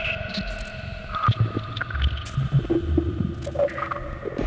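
Ambient electronic music played on analog and Eurorack modular synthesizers: several held drone tones over low, uneven bass pulses, with scattered short clicks.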